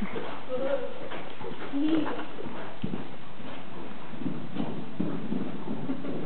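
Hoofbeats of a cantering Welsh pony on a soft indoor-arena surface, with voices in the background.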